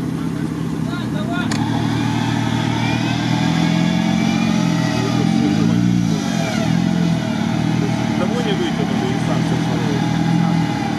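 Jeep Wrangler engine revving up and down under load while the stuck vehicle is pulled through deep mud on a tow line.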